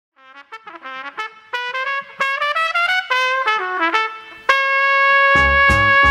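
A trumpet plays a quick run of short notes climbing in pitch, then holds one long note. A swing rhythm section with bass and drums comes in under it near the end.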